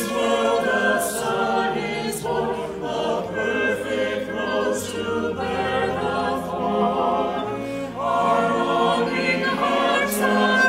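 Church choir singing in harmony, the voices recorded separately at home and mixed together as a virtual choir.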